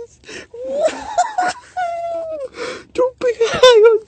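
A man's drawn-out, wordless moaning and wailing mixed with laughter, the voice wavering up and down on long held tones, while he is high on synthetic cannabis.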